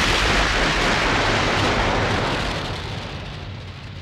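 Sound-effect explosion of a self-destructing vehicle: a loud, sustained blast with a deep rumble that fades away over the last second or so.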